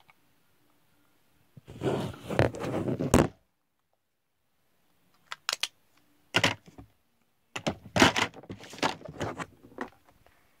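A phone being handled right against its microphone. A loud rubbing rush starts about two seconds in and lasts just under two seconds, then come two short knocks and, near the end, a run of knocks and scrapes.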